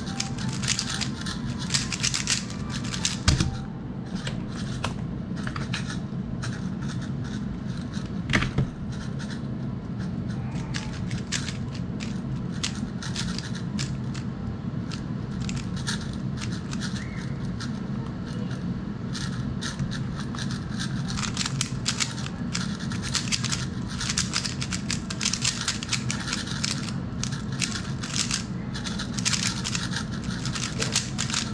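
3x3 speedcube being turned fast in the hands: rapid plastic clicking and clacking of the layers in quick flurries with short pauses, and a couple of louder knocks about 3 and 8 seconds in.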